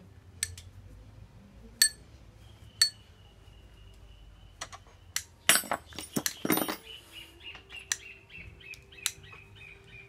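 A small handlebar bicycle bell rung by hand: single bright dings about two and three seconds in, then a quick flurry of rings a little past the middle.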